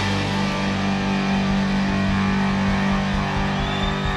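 Live rock band with electric guitars holding a long, sustained ringing chord. A high steady tone comes in near the end.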